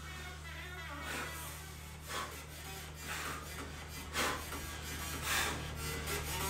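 A person working through push-ups on a wooden floor: a short rasp about once a second with each rep, over a steady low hum.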